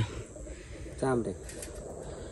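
Low outdoor background rumble with one brief, low voice-like sound about a second in.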